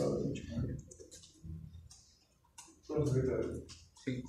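Indistinct talk in a small room, in two short stretches, with scattered light clicks throughout.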